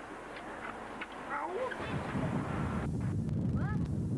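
Faint voices in the first half; then, about two seconds in, a sudden switch to a loud, low rumble of wind buffeting the camcorder microphone, with voices calling over it.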